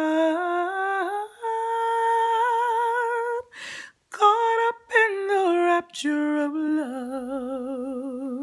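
A woman's voice singing a wordless run in a low alto: held, sliding notes, a breath in about halfway, then quick short notes stepping down into a long low note with a wide vibrato near the end.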